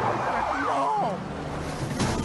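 Cartoon car-chase sound effects: a car engine running at speed, with a police siren wailing up and down over it in the first second.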